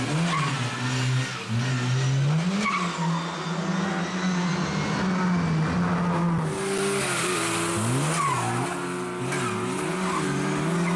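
A classic Lada saloon rally car's four-cylinder engine revving hard, its pitch climbing and dropping again and again through gear changes and lifts of the throttle, with several quick up-and-down swings of revs in the second half.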